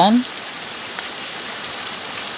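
Steady rushing and splashing of a shallow stream flowing over and around rocks.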